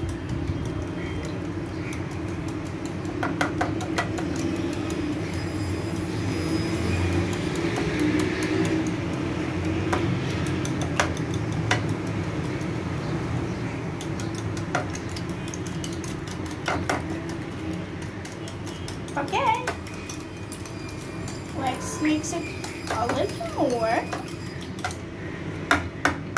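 Hand wire whisk beating pancake batter in a bowl, a steady run of quick clicks and scraping as the wires hit the bowl's sides.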